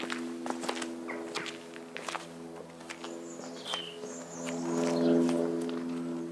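Footsteps on a cobbled path, with background music of sustained chords that swells slightly in the second half.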